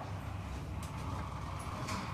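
Quiet room tone: a steady low hum with a faint haze above it, and a couple of faint clicks.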